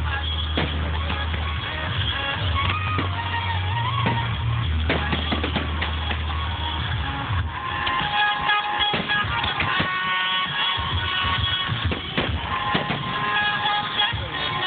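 Loud music with a heavy bass line and a wavering melody, played over the show's loudspeakers, with sharp bangs of aerial firework shells bursting through it. The bass drops out about halfway through.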